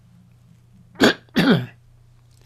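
A person coughing twice in quick succession, the second cough longer and falling in pitch.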